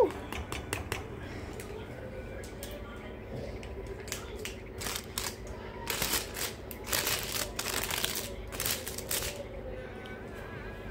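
Rustling and clicking handling noises, scattered at first, then a dense run of rustling bursts from about six to nine seconds in.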